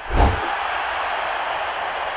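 Intro logo sound effect: a deep boom hit right at the start, then a steady rushing noise that holds at an even level.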